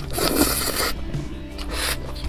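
Slurping a mouthful of spicy instant noodles, a loud noisy suck lasting under a second, with a shorter burst near the end, over background music.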